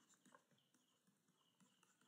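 Near silence, with a few faint ticks of a stylus on a tablet screen as handwriting is added.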